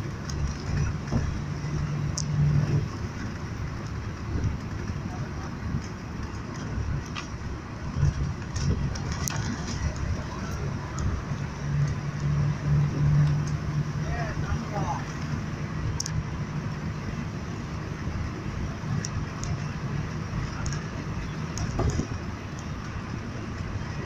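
Road noise inside a moving car: a steady rumble from the tyres and the engine's low hum, the hum swelling louder for a few seconds near the start and again around the middle.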